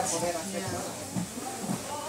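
Quiet, low-level talking with no clearly audible scissor snip.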